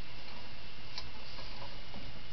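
Steady background hiss in a small tiled room, with one sharp click about halfway through.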